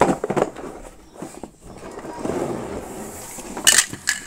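Hard plastic toy pipes and connector pieces rattling and knocking as they are handled and set down on a wooden floor, with rustling in between and one sharp clack near the end.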